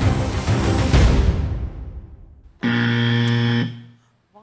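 Tense game-show music with heavy drum hits fades away. About two and a half seconds in, a loud, steady game-show buzzer sounds for about a second: the wrong-answer buzz, meaning the guess is not on the board.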